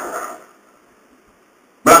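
Speech only: a man's voice trailing off, a pause of about a second and a half of faint room tone, then his voice again just before the end.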